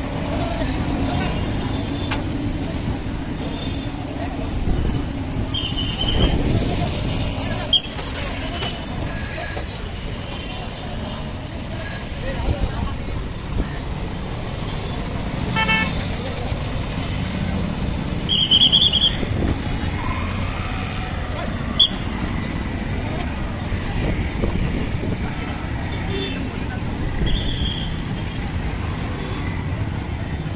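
Busy road traffic: the engines of auto-rickshaws and other vehicles run steadily, with short, high vehicle-horn toots sounding several times, and people talking in the street.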